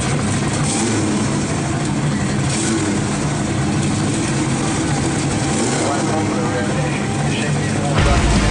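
Plymouth GTX's V8 engine idling steadily as the car creeps forward, with voices in the background.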